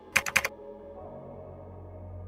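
Computer keyboard keystrokes: about four quick key presses in the first half second as a number is typed into a settings field.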